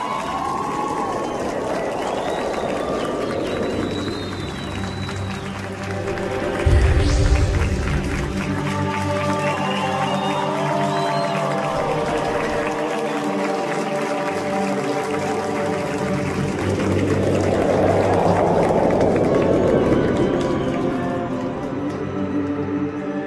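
Theatre audience applauding over the show's curtain-call music. The applause swells near the start and again near the end, with a heavy low thump about seven seconds in.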